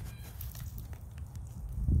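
Steady low rumble of wind on the microphone, with a few faint clicks and a louder gust near the end.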